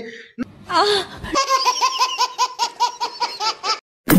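Laughter: a quick, high-pitched run of 'ha' sounds, about seven a second, that cuts off suddenly shortly before the end.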